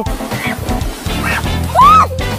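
Background music, with a woman's short, high yelp that rises and falls in pitch near the end as she slips on wet rocks and falls into the surf.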